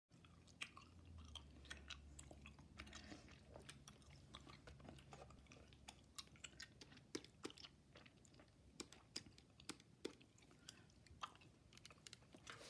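Close-up gum chewing: soft, irregular wet clicks and smacks of the mouth working a piece of chewing gum.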